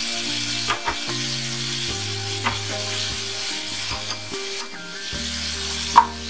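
Oil and spice masala sizzling in a frying pan as fresh ginger paste is stirred in with a wooden spatula. There is one sharp knock right at the end.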